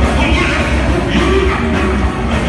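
A live band playing loud music, heard from the audience: electric bass guitar and hollow-body electric guitar over a drum kit, with a heavy, steady low bass.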